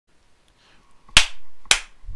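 Two sharp clicks, the first a little over a second in and the second about half a second later, each with a brief ring after it.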